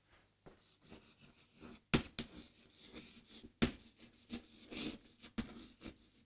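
Chalk writing on a chalkboard: short, irregular scratchy strokes, with a few sharp taps as the chalk meets the board.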